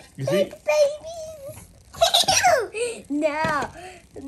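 A young child's high-pitched excited squeals and giggles, in several short bursts, the loudest about two seconds in.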